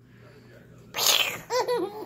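A short breathy splutter about a second in, then a baby giggling in short high-pitched laughs.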